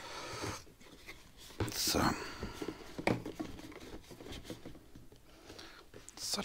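Faint handling sounds from a plastic fuel canister and its safety-locking pour spout: soft rustles and a few light clicks, with a short rush of noise at the start and a man saying "So" about two seconds in.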